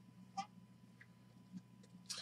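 Near silence with a faint steady hum, broken by a few light clicks of chromium trading cards being flipped through by hand, the first about half a second in.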